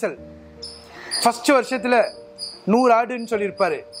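A man speaking in two short phrases, with short high-pitched chirps repeating a few times a second behind his voice.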